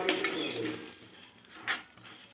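Steel spoon stirring and scraping peas masala in an iron kadai, with a sharp scrape near the end. A low cooing call sounds in the first half second.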